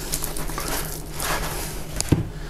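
Wet crackling and rasping of a large grass carp being cut and worked free behind the head, with two short scraping strokes. A steady low hum runs underneath.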